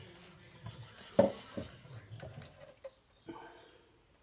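Knocks and light scraping as the metal chassis of an Ibanez TSA15 tube amp head is slid out of its cabinet by hand: one sharp knock about a second in, then a few lighter clicks and knocks.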